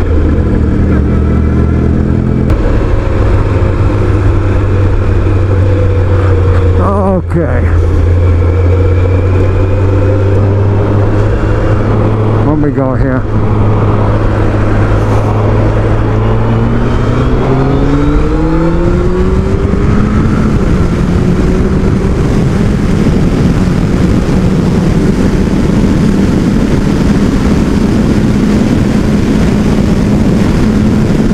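2005 Kawasaki ZX-12R's inline-four engine running at speed under a rush of wind noise. The engine note holds steady and breaks briefly twice, then rises as the bike accelerates and settles at a higher steady note.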